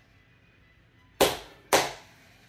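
Two sharp hand claps about half a second apart, each dying away quickly.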